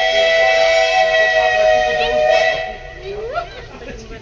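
Steam locomotive's whistle giving one long, steady blast that cuts off about two and a half seconds in.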